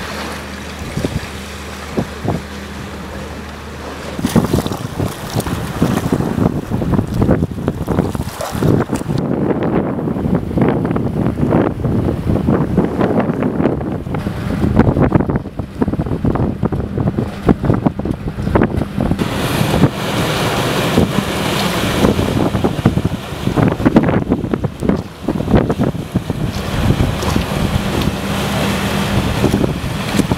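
Storm wind buffeting the microphone in heavy, uneven gusts that pick up about four seconds in, over storm-surge water washing across a flooded ferry landing. A faint steady low hum runs underneath.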